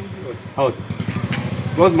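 An engine idling steadily beneath scattered speech from a group of people.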